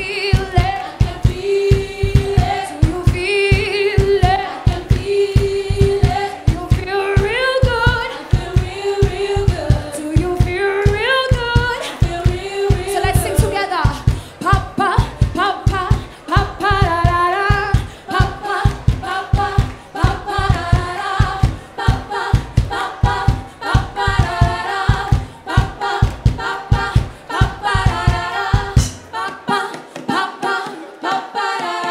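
Live music: women singing with backing voices over a steady drum beat. The drum drops out about a second before the end, leaving the voices.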